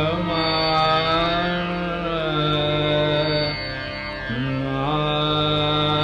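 Dhrupad vocal in Raga Adana: a male voice holds long notes and slides slowly between them, dipping in pitch about two seconds in and rising again near the end, over a steady drone.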